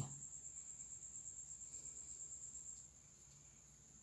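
Near-silent room tone under a faint, steady high-pitched whine; the background grows a little quieter about three seconds in.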